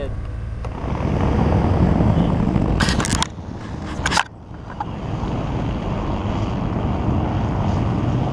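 Wind buffeting the microphone over the low rumble of an idling SUV engine, broken by a few sharp clatters about three and four seconds in as the vehicle's door is handled.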